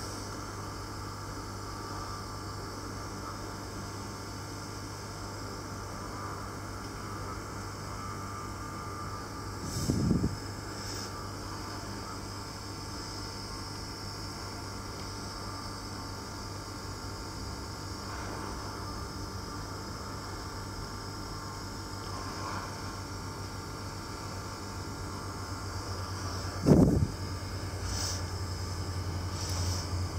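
Hot-air rework station blowing steadily while reflowing the solder on a chip, over a steady low mains hum. Two brief rumbling knocks stand out, about ten seconds in and a few seconds before the end.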